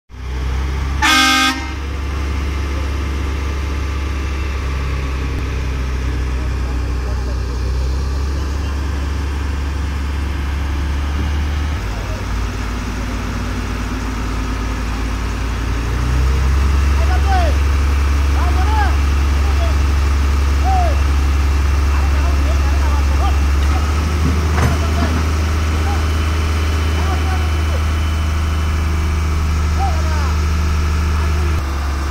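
A vehicle horn toots once, about a second in, over the steady low hum of heavy diesel engines from the crane and plant on a construction site. The engine hum gets louder about halfway through and stays up.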